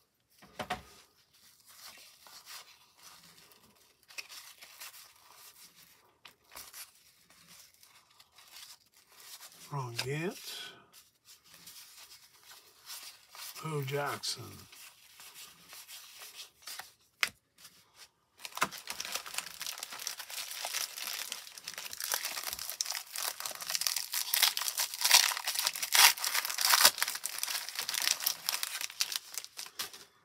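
Light rustling and clicking of baseball cards being flipped through, then, from about two-thirds of the way in, loud continuous crinkling and tearing of the cellophane wrapper of a 1990 Topps cello pack as it is opened.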